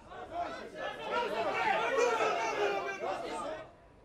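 A crowd of protesters scuffling with riot police: many voices talking at once. It stops a little before the end.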